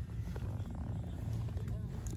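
Boat engine idling: a steady low rumble.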